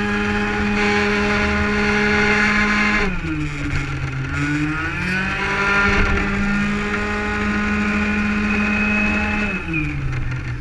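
Racing 50cc two-stroke scooter engine with a Malossi kit, heard from onboard, held high in the revs. It drops sharply about three seconds in, climbs back up a second or two later, and drops again near the end.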